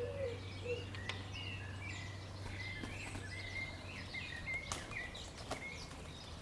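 Several garden songbirds chirping and warbling, with a lower wavering call in the first second, over a steady low hum that fades partway through. A few sharp clicks sound near the middle and toward the end.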